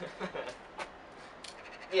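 Quiet, brief voice sounds from a person, with a few faint clicks, ending in the start of a loud call.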